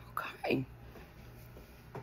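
A woman softly says "okay", then quiet room tone with a faint steady low hum.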